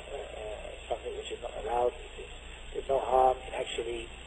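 Speech only: a man talking in short phrases with pauses, his voice thin and missing its high end, like a telephone recording.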